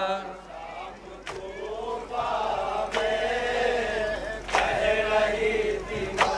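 Men's voices chanting a Shia noha (mourning lament), with sharp chest-beating slaps of matam falling steadily about once every second and a half.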